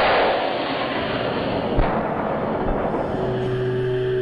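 A sudden loud bang right at the start, its rushing noise fading over about three seconds, with a single sharp knock near the two-second mark.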